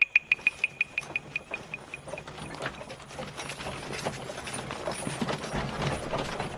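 A quick run of sharp, high percussion knocks from the score, fading out over the first two seconds. Under it and then alone, a column of soldiers on the move: tramping footsteps, horse hooves and a cart rattling and creaking, slowly getting louder.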